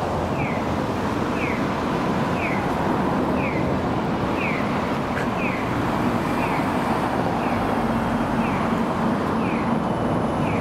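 Street traffic noise, a steady wash of passing cars, with a short high falling chirp repeating evenly a little more than once a second.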